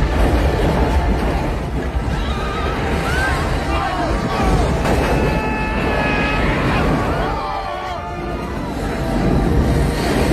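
Movie sound effects of meteors hitting a city street: a continuous deep rumble of explosions and crashing debris, with wavering cries that sound like people screaming over it.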